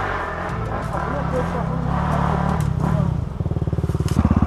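Off-road motorcycle engines running, their pitch wavering up and down with the throttle; a little past three seconds in, a low, evenly pulsing throb takes over as a bike pulls away at low revs.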